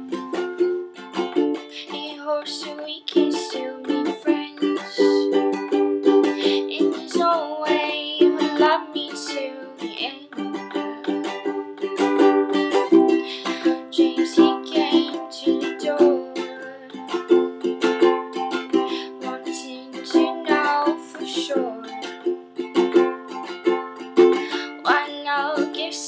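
Ukulele strumming chords in a steady rhythm.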